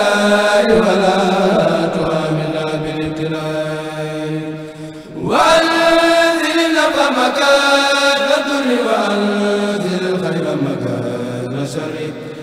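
Young men's voices of a Mouride kourel chanting a khassida in Arabic through microphones, in long drawn-out notes that slowly fall in pitch. The phrase fades about five seconds in, and a new one starts with an upward swoop.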